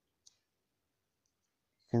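Near silence, with one faint short click about a quarter of a second in and two fainter ticks a little past the middle; a voice starts speaking at the very end.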